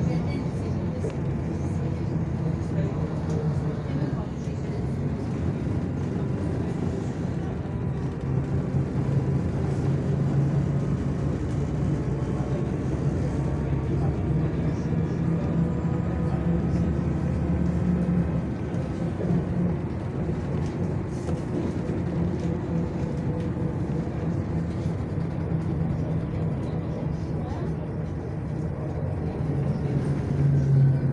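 City bus engine and drivetrain running while the bus drives, heard from inside the cabin: a steady low drone that swells twice as the bus picks up speed and eases off about two-thirds of the way through.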